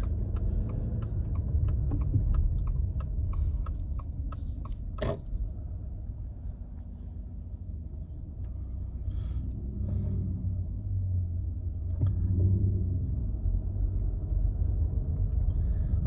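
Low, steady rumble of a car's engine and tyres heard from inside the cabin while driving slowly, with a turn-signal relay ticking about three times a second for the first four seconds or so. A single knock comes about five seconds in.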